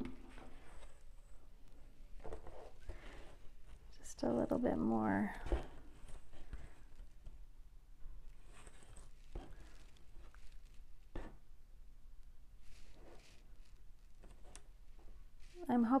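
Faint scattered clicks and handling taps in a small room, with a few seconds of a person's voice about four seconds in.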